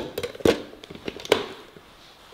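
Hard plastic knocks and clicks as a filled personal blender cup is set onto its motor base and twisted into place: a knock at the start, the loudest about half a second in, and another a little past one second.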